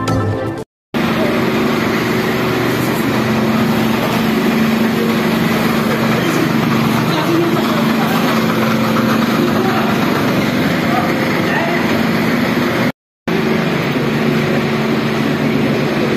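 Fire engine's engine running steadily, a constant low hum under a loud, even din with people's voices in the background. The sound breaks off briefly near the end at a cut.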